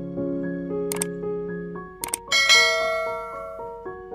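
Gentle keyboard background music with a sharp click sound effect about a second in, then a quick double click and a bright, ringing notification-bell ding just after two seconds: the click-and-bell sound effects of a subscribe-button animation.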